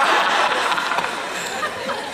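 Audience laughing and chattering in a large hall, many voices at once, fading down after about a second.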